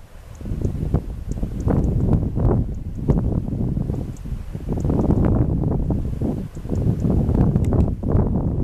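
Wind buffeting the microphone in uneven gusts, a loud low rumble that swells and dips, with a few faint high ticks above it.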